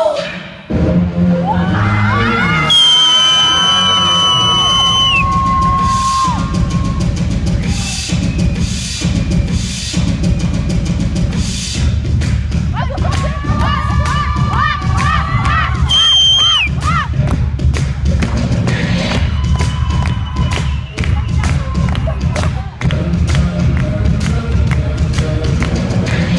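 Loud dance music with a heavy thumping bass, and an audience cheering over it with high-pitched shouts a few seconds in and again about halfway through.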